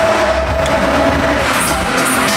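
Loud live concert music with crowd noise, heard close to the stage; a held note ends about a second and a half in.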